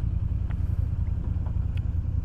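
Motor scooter engine idling with a steady low rumble.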